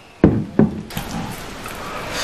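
Two knocks on a tabletop about a third of a second apart, as a glass or bottle is set down among the beer bottles, followed by softer handling noises.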